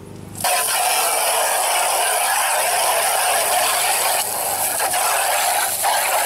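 Garden hose spray nozzle jetting water into a Little Giant condensate pump's black plastic reservoir tank, rinsing out the slime: a steady hiss and splash that starts suddenly about half a second in.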